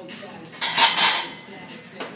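Loaded barbell racked onto the steel hooks of a power rack: a loud metallic clank and rattle of bar and plates, lasting about half a second, a little past halfway.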